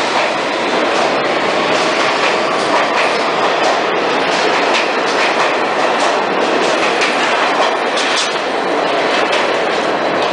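New York City subway train running past alongside the platform, a loud steady rumble with repeated clacks of its wheels over the rail joints.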